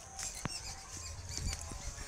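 Scattered short, high-pitched chirps and squeaks over a low rumble, with a single sharp click about half a second in.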